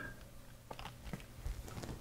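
A few faint, scattered clicks of keys being pressed on a Sharp PC-1500 pocket computer's keyboard.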